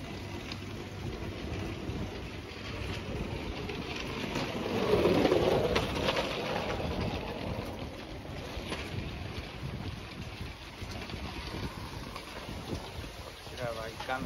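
Outdoor street ambience: a steady noisy background with wind on the microphone and indistinct voices, swelling to its loudest about five seconds in.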